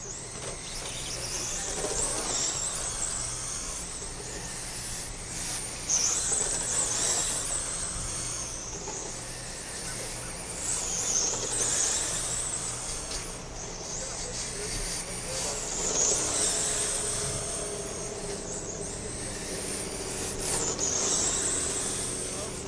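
Radio-controlled oval race cars running laps, a high whine that rises and falls in pitch about every five seconds as they speed up and slow down.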